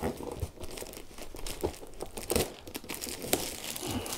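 Clear plastic shrink-wrap being peeled and pulled off a cardboard box, crinkling and tearing in an irregular run of crackles with a few sharper snaps.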